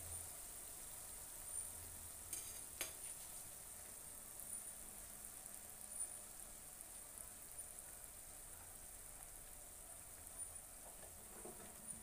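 Fafda (gram-flour strips) frying in oil in a pan, a faint, steady sizzle with small crackles. A few light taps are heard about two to three seconds in and again near the end.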